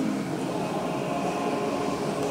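Steady hubbub of many indistinct voices talking at once.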